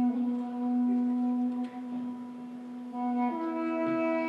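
Two Armenian duduks playing: a long steady held note over a drone, with a second, higher note coming in about three seconds in.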